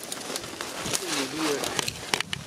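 Footsteps crunching through dry leaf litter and brittle twigs, a run of small cracks and clicks, with one short wavering call about a second in.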